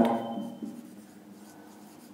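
Marker pen writing on a whiteboard: quiet strokes of the felt tip on the board.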